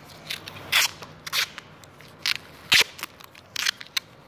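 About half a dozen sharp crackles and clicks, spread unevenly, as hands handle a homemade tool held together with tape.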